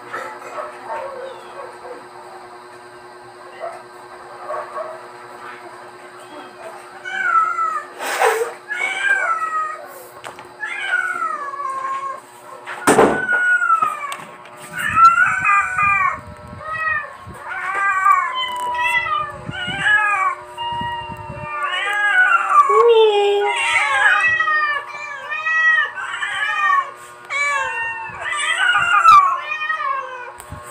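Several cats meowing over one another: many short, rising-and-falling calls that begin about seven seconds in and come thicker and faster from the middle on. Two sharp knocks stand out, one about eight seconds in and a louder one about thirteen seconds in.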